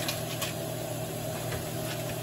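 Pot of red beans and rice at a rolling boil: a steady bubbling hiss over a low hum, with a faint pop about half a second in.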